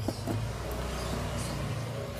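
Steady low rumble with an even hiss over it, with no distinct knocks or clicks.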